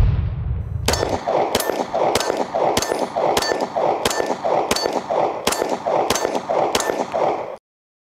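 Taurus G3 9mm pistol fired in a steady string at a steel target: about eleven evenly spaced shots, a little over one and a half a second, each followed by the ring of the steel plate. A low whoosh sound effect fills the first second, and the sound cuts off just before the end.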